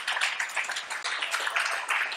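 Audience applauding: many people clapping at once in a dense, steady patter.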